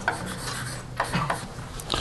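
Hand-writing strokes as an equation is written out: a run of short, irregular scratches with brief pauses between them.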